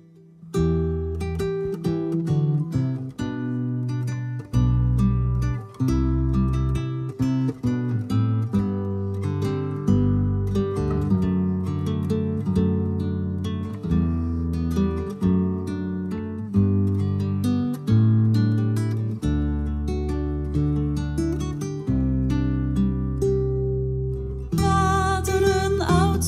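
Song introduction played on a nylon-string classical guitar: picked notes ringing over low bass notes. A woman's voice starts singing near the end.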